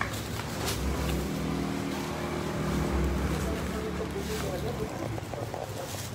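A motor vehicle's engine running close by: a low, steady drone that starts about a second in and fades out near the end.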